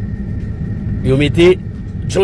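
Steady low background rumble under a recorded man's voice, which speaks briefly about a second in.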